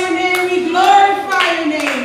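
Women's voices singing a worship song, with hands clapping along and a few sharp claps standing out.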